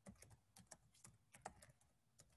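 Faint typing on a computer keyboard: a quick, irregular run of light keystroke clicks.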